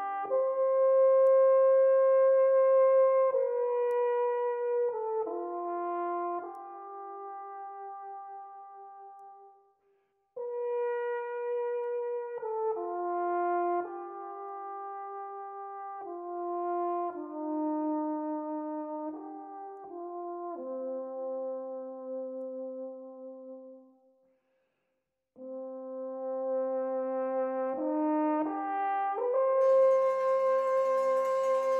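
Alphorn playing a slow melody in long held notes, in three phrases; the sound dies away to a brief silence about ten seconds in and again near twenty-five seconds.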